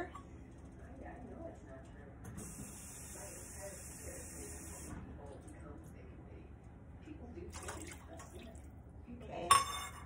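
Kitchen tap running steadily for about two and a half seconds, filling a cup with water. Near the end there is a brief loud clatter.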